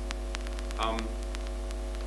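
Steady electrical mains hum with a buzzy set of steady tones above it, and faint clicks ticking through it. There is a brief sound of a voice about a second in.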